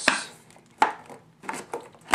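Stiff cardboard headphone packaging being handled and closed: a sharp knock at the start, another just under a second in, and a few lighter taps later.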